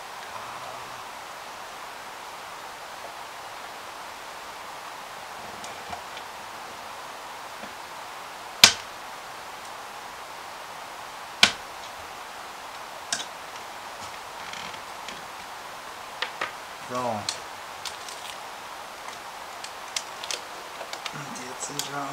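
Plastic parts of a DeLorean model kit clicking and knocking as they are handled and fitted, over a steady hiss: two sharp, loud clicks a little under halfway through, then a scatter of smaller clicks.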